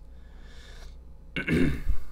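A man clearing his throat once, briefly and loudly, about one and a half seconds in.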